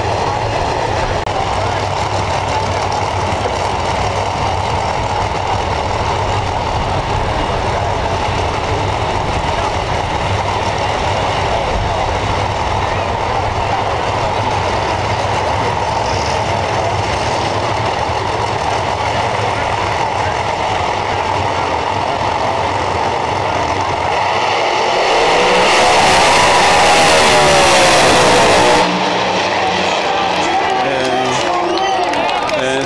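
Drag race cars running with a steady engine drone, then a louder run of about four seconds near the end that wavers in pitch and stops suddenly.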